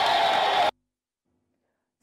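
A crowd cheering and shouting, cut off abruptly less than a second in, followed by silence.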